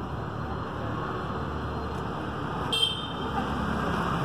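Steady rumble of city street traffic, with a short high-pitched toot about three seconds in.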